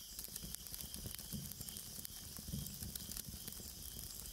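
Faint steady hiss.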